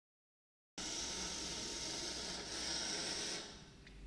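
Small mOway robot's gear motors running as it drives across the table: a steady whirring hiss that starts abruptly a little under a second in and stops about three and a half seconds in, followed by a couple of faint clicks.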